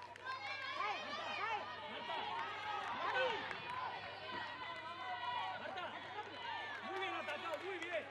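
Many overlapping shouts and calls from women players and the people around the pitch during open play in a football match, with no clear words.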